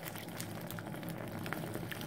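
Wet, bubbly crackling of a foamy cleaning liquid being stirred into a mound of Ajax powder cleanser, a dense run of small pops and crackles.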